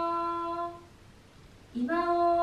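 A girl's voice chanting a karuta poem in long, drawn-out notes held on one pitch. The chant breaks off a little before halfway and resumes near the end, starting slightly lower and sliding up to the same held note.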